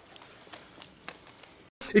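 Faint, irregular soft slaps and taps of forearms and sleeves meeting as two partners trade punches in a Wing Chun punch drill. The sound cuts off suddenly just before the end, and a man's voice begins.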